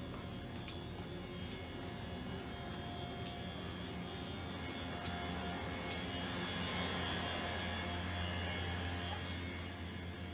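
Steady mechanical hum with an airy rushing noise. It grows a little louder from about halfway through and eases off near the end.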